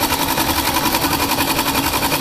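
Multi-needle embroidery machine stitching lettering into a hooped T-shirt: a rapid, even rhythm of needle strokes over a steady mechanical tone.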